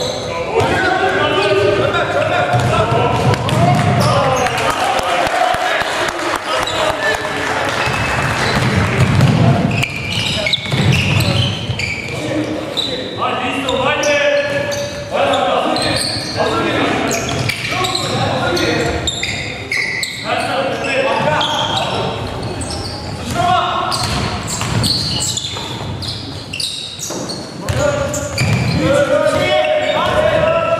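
Basketball game in an echoing sports hall: a ball bouncing repeatedly on the wooden court, with voices of players and spectators throughout.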